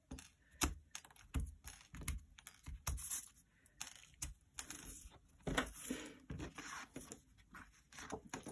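Round-headed pins being pulled one after another out of paper strips and a cork board and set down, making irregular light clicks and taps, with the paper strips rustling as they are lifted off.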